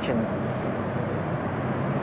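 Steady low rumble of outdoor city background, like distant traffic, in a pause between lines.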